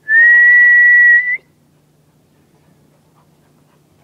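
A person whistles one loud, steady note lasting just over a second, with a slight upward flick at the end.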